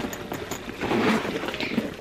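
Rustling and handling noise from a sequined faux-leather mini backpack being moved and turned in the hands, louder about halfway through.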